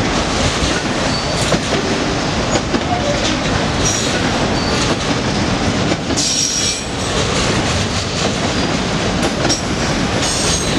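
Freight train of autorack cars rolling past at close range: a steady rumble and clatter of steel wheels on rail. Brief high-pitched wheel squeals come through several times.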